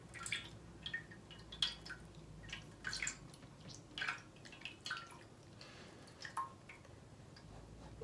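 Faint, irregular drips of water pressed out of wet paper pulp, falling through the screen into a catch tray below.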